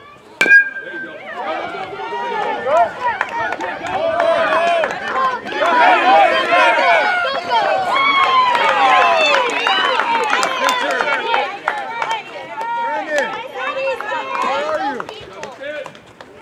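A metal baseball bat pings once as it hits the ball, a sharp crack with a brief high ring. Right after, many voices of players and spectators shout and cheer over the play, loudest in the middle and dying down near the end.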